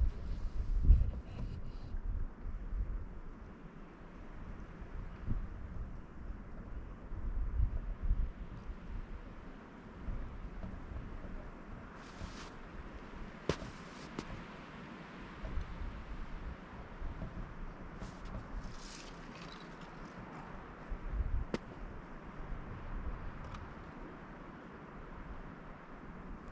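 Wind buffeting the camera microphone in uneven low gusts, with a few crunching footsteps on frozen snow and ice.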